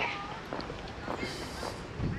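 Faint distant voices with high, wavering calls, and a short hiss about two-thirds of the way through.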